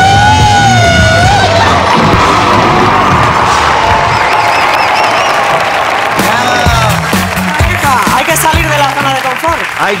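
A live heavy metal band ends a song on a held note, followed by a crowd cheering and applauding. Voices come in over the applause near the end.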